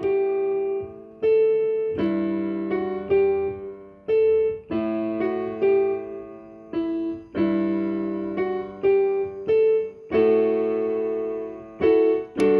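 Instrumental music with no singing: a piano-like keyboard plays slow struck chords and notes, each ringing and fading before the next one comes in.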